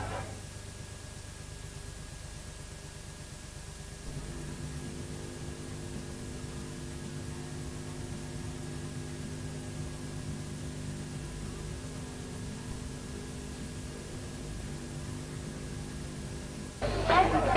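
Steady hiss and electrical hum from a video recording with no programme sound. A few more steady buzzing tones join in about four seconds in.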